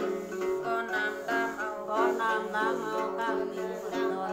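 A woman singing a Tày-Nùng Then ritual chant to her own accompaniment on the đàn tính, a long-necked gourd lute, its plucked notes steady under the sliding vocal line.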